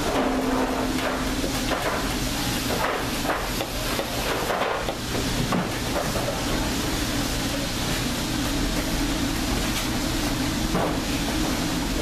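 Irregular knocks and scrapes as a metal sheet pan is tapped and scraped against the rim of a stainless-steel mixing bowl, with most of them in the first half and one more near the end, over a steady low machine hum.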